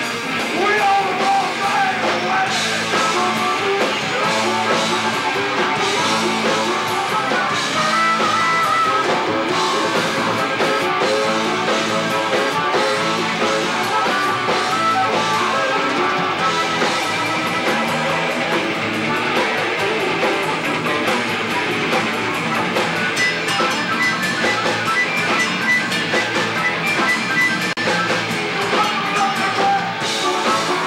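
Live rock band playing a loud instrumental jam: electric guitar, bass and drum kit, with sustained lead notes over the top.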